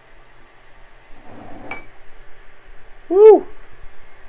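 AnkerMake M5 3D printer's stepper motors running as it extrudes filament through the hotend. A faint steady motor tone is joined about three seconds in by one short whine that rises and falls in pitch. A light tick with a brief ping comes a little before the whine.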